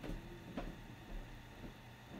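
A couple of faint, light clicks, one at the start and one just over half a second in, over a low rumble and faint hiss.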